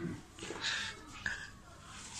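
A boy's voice reading aloud quietly, in a few short broken phrases.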